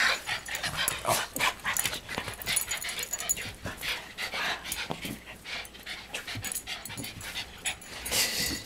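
Excited West Highland white terriers whimpering and yipping, mixed with many short clicks and scuffles.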